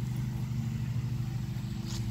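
A steady low motor hum that holds one pitch throughout.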